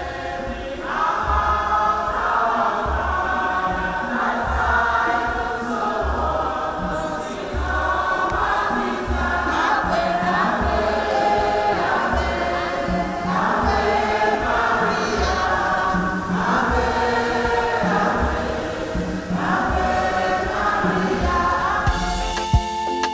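Choir and congregation singing a closing hymn together, with a steady low beat underneath.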